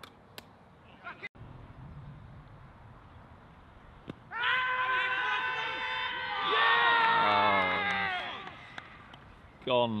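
Cricket fielders shouting an LBW appeal together: several men's voices in one loud, drawn-out shout of about four seconds. It comes right after a short knock about four seconds in.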